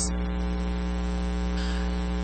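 Steady electrical mains hum: a low buzz with a ladder of evenly spaced overtones that holds unchanged throughout.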